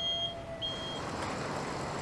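Overhead crane's warning beeper sounding as it carries a load: short, high beeps about every 0.7 s. The beeps stop about a second in, leaving a steady hiss of shop noise.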